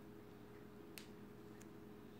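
Near silence: a faint steady low hum of room tone, with a single faint click about halfway through, a computer mouse click.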